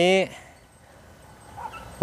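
A man's voice finishing a drawn-out word, then a short pause with only faint background.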